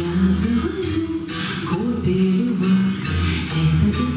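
A woman singing a song with acoustic guitar strumming along.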